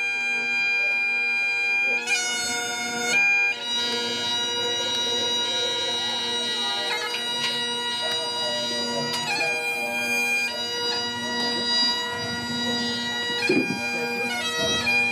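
Bagpipes playing a slow tune: held melody notes, changing every second or two, over a steady drone.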